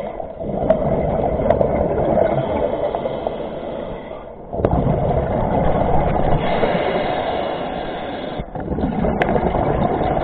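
Scuba regulator breathing underwater: long rushing surges of exhaled bubbles, broken by two short lulls about four seconds apart.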